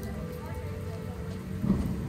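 Steady rain falling on wet pavement, with faint music underneath and a brief louder rush near the end.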